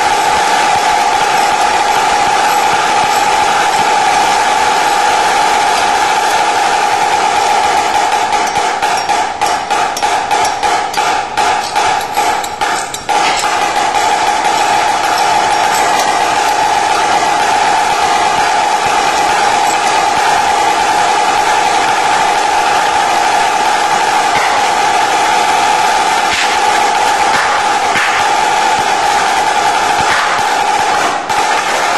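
Marching snare drum played solo with sticks: dense rolls and rapid rudiment patterns with a bright, ringing head tone. Between about 8 and 13 seconds in, the playing breaks into separate, spaced accented strokes, then returns to continuous rolls.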